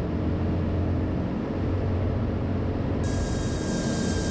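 Cirrus SR22's Continental IO-550 six-cylinder engine and propeller droning steadily on final approach. About three seconds in, a steady high hiss joins the drone.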